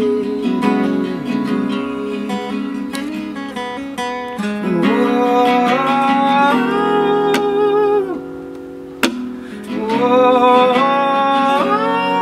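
Two acoustic guitars, one of them an archtop, strummed and picked under a man singing long held, wavering notes. About two-thirds of the way through the voice drops away and there is a single sharp click before the singing comes back.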